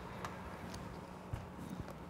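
A few faint, scattered knocks and clicks as a wall oven door is shut and the cook steps away, over a steady low hum.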